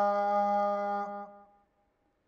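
A Buddhist monk chanting a Sinhala blessing verse, holding one long final note that fades out about a second and a half in.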